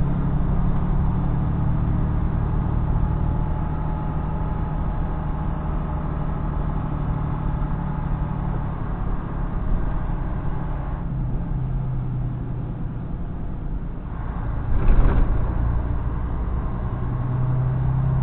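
Semi-truck's diesel engine running at low road speed, heard from inside the cab: a steady low drone whose pitch shifts about eleven seconds in and again around fifteen seconds, where it briefly grows louder.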